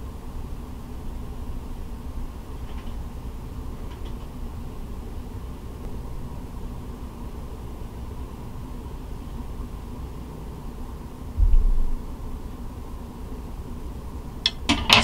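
Steady low background rumble with a faint hum, and one short, dull low thump about eleven and a half seconds in.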